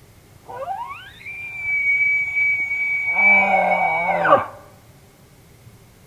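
Elk bugle: a whistle that rises quickly to a high note, holds it for about three seconds, then breaks into low grunts near the end before cutting off suddenly.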